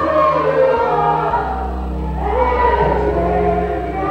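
A church congregation sings a worship song together in many voices, over sustained low notes of an accompanying instrument.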